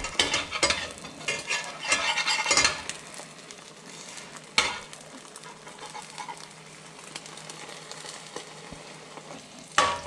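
Omelet sizzling in oil and butter in a frying pan while a metal spatula scrapes under it and folds it over, the scraping busiest in the first few seconds. After that the sizzle runs on steadily, with two sharp taps of the spatula on the pan, one about halfway and one at the end.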